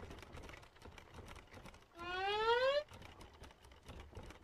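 A short voiced 'Mm?' hum about two seconds in, rising in pitch like a question, from an awkward cartoon character. Faint, rapid clicking sits in the background.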